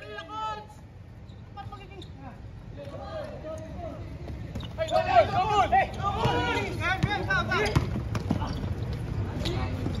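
A basketball bouncing on a hard court during play, a few sharp knocks, with players shouting loudly from about halfway through.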